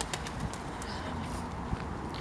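Pigeons cooing over steady outdoor background noise.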